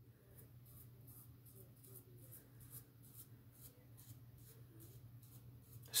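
Eclipse Red Ring safety razor making faint, quick scratchy strokes, about three or four a second.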